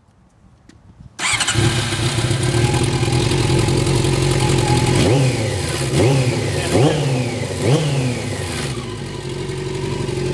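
1987 Honda CBR600F Hurricane's inline-four engine starting about a second in, catching at once and idling. It is then blipped four times in quick succession, each rev rising sharply and falling back, before settling to a steady idle.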